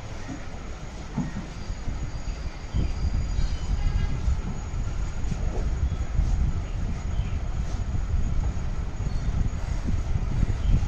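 A cow being milked by hand into a steel pail, with squirts of milk hitting the pail, under a steady low rumble that gets louder about three seconds in.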